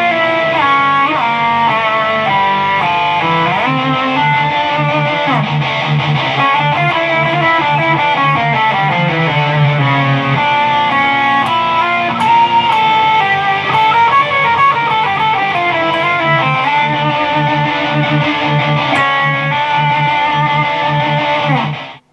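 Electric guitar lead line in D harmonic minor, stepping and sliding between notes, played over a recorded drop-D heavy metal rhythm riff whose low notes repeat in a steady pulse. The music stops suddenly near the end.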